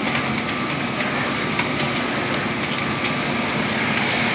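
Large fire burning through garages: a steady rushing noise with scattered crackles and pops.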